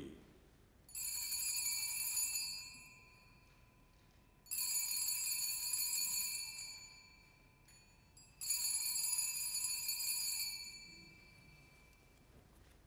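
Altar bell rung three times, about four seconds apart, each ring fading over about two seconds: the signal for the elevation of the consecrated bread at communion.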